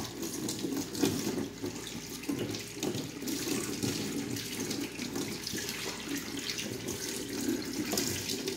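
Kitchen tap running steadily into a stainless-steel sink while a whole plucked chicken is rinsed under the stream. The water splashes off the bird as hands turn and rub it.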